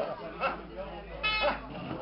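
People talking outdoors, with one short, steady, high-pitched note a little after a second in.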